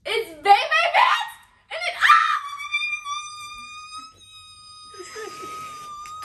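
Laughter, then a voice rising into one long high-pitched squeal held at a steady pitch for about five seconds.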